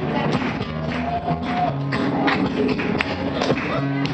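Acoustic guitar strummed hard in a steady, percussive rhythm, with the strokes sounding like taps over a moving bass line, as the opening of a song.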